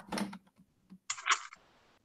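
Quick clicking at a computer, in two short groups: one right at the start and a second about a second in.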